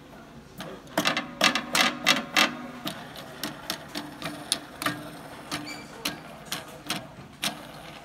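Blue plastic tension knob being spun along the threaded steel spade bolt of an Atlas AT-250 trap's main spring, with a run of clicks and rattles against the threads. The clicks are loud and quick for the first couple of seconds, then lighter and more spread out.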